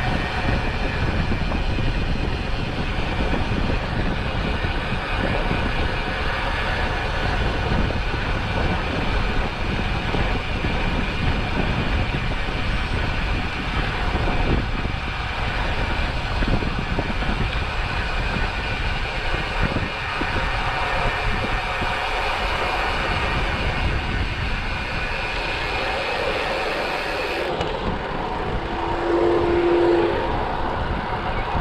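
Steady wind rushing and buffeting over a chest-mounted GoPro's microphone as the road bike rolls along. Near the end an oncoming camper van passes, adding a brief hum and a slight swell in loudness.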